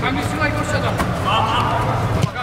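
Footballers shouting to each other during an indoor game, with a couple of sharp knocks of the ball being played, over a steady low hum.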